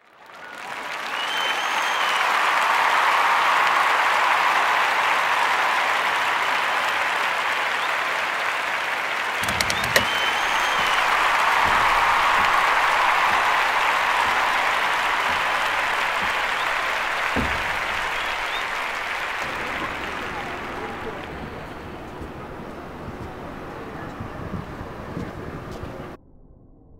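A crowd applauding, with voices mixed in. It swells in at the start, holds, and gradually fades away over the last several seconds.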